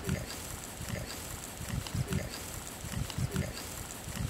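Gloved hand mixing dry spice powders and salt in a steel bowl: an irregular run of soft low thuds and rubbing, a few each second.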